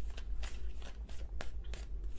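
Tarot cards being shuffled and handled: a run of quick, irregular papery flicks and snaps, over a low steady hum.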